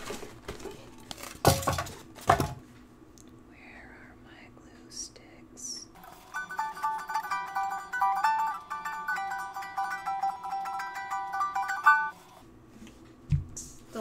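A cardboard box handled, with a couple of loud knocks in the first few seconds. Then, from about halfway, a ukulele plays a short run of strummed chords for about six seconds and stops.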